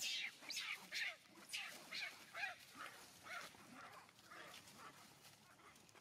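Macaque screaming in a run of short, high, falling cries, about two a second, growing fainter toward the end: distress calls, as during a chase or attack.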